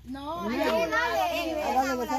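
Several voices talking over one another at once, with no one voice standing out as a single speaker.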